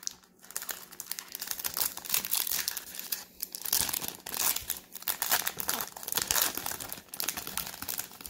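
Foil wrapper of a Topps Total baseball card pack crinkling and tearing as it is opened by hand, a dense run of crackles coming in uneven bursts.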